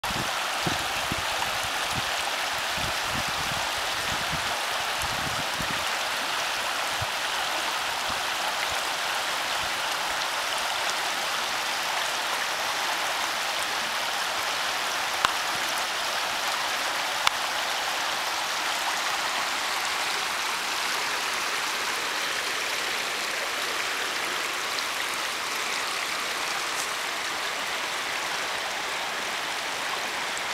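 A muddy creek running high and fast, a steady rushing of water. There are a few low bumps on the microphone in the first few seconds and two short clicks around the middle.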